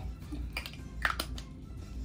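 A few light clicks and taps from a handheld plastic setting-spray bottle and its cap being handled, about half a second and one second in.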